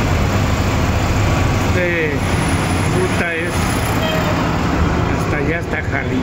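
Cabin of a moving city bus: its engine runs with a steady low drone under constant road and rattle noise. Voices come through briefly about two seconds in and again near the end.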